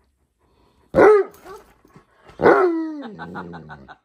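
A large dog barking twice, each bark a pitched call that slides down in pitch. A quick run of short laughs follows near the end.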